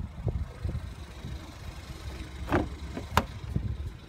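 Ford Escape EcoBoost engine idling with a low rumble, and two sharp clicks about two and a half and three seconds in as the rear door is unlatched and opened.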